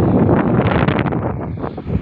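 Wind buffeting the phone's microphone: loud, steady noise that eases slightly near the end.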